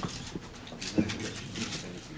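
Quiet room sound with a few soft clicks and rustles and a brief faint murmur of a voice about a second in, as a framed certificate is handed over and hands are shaken.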